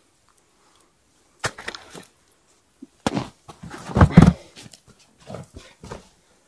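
Scattered clicks and rustles of hands handling a freshly caught perch and its metal spoon lure, with a louder rustling thump about four seconds in.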